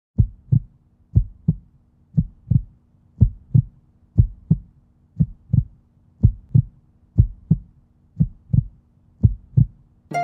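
Heartbeat sound effect: a steady lub-dub, one low double thump about every second, ten beats in all.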